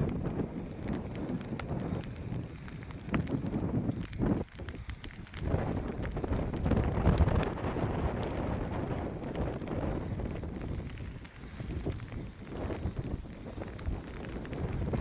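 Strong wind buffeting the camera microphone in uneven gusts, easing briefly twice.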